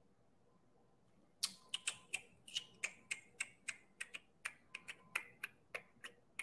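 Typing on a computer keyboard: after a second and a half of quiet, a run of separate key clicks, roughly three a second.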